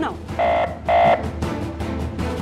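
Two short electronic beeps, each a steady tone about a quarter of a second long, half a second apart, over a continuous background music bed.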